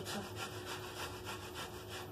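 A carrot being rubbed up and down a metal box grater: quick, even scraping strokes, about five a second.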